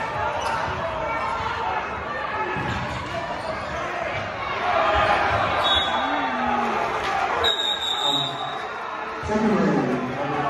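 Basketball bouncing on a hardwood gym floor over steady crowd chatter in a large echoing gymnasium. A short high whistle sounds about six seconds in, and a longer one about seven and a half seconds in, as the referee stops play.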